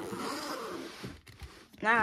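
Zip-around card binder being zipped shut, a scratchy running zip.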